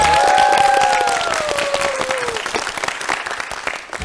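Studio audience applauding, the clapping fading away toward the end. A long held tone sounds over it, sliding slowly down in pitch over the first two seconds or so.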